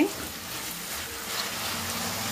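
Sliced onions sizzling in hot oil in a kadhai while being stirred with a wooden spatula, the sizzle growing a little louder after about a second.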